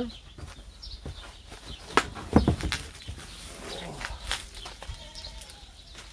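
A bubble-wrapped exhaust muffler being lifted out of its cardboard box: plastic wrap rustling and cardboard scraping, with sharp knocks about two seconds in. A faint, wavering animal call sounds in the background during the second half.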